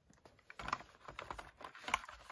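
Plastic blister packs of alcohol ink bottles being handled and set down on a table: a run of light, irregular clicks and crinkles, loudest near the end.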